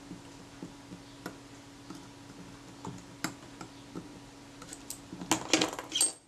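Small scattered clicks and ticks of fingers working small metal parts on the top cover of a Kodak Retina Reflex S camera, with a quick run of louder clicks near the end, over a faint steady hum.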